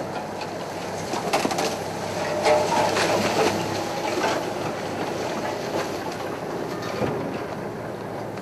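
Birds calling, with dove-like cooing about two and a half to three and a half seconds in, over a steady hiss with scattered clicks.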